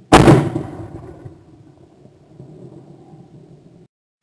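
A single shotgun shot at a flying skeet clay target about a tenth of a second in, its report dying away over about a second. Low steady background noise follows and cuts off near the end.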